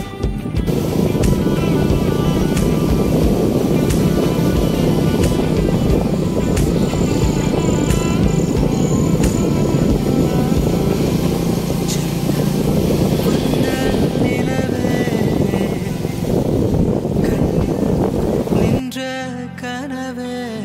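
A moving two-wheeler's riding noise, loud and rough, under background music. About a second before the end the riding noise cuts off abruptly and only the music is left.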